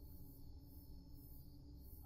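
Near silence with a faint, steady background music drone of low sustained tones.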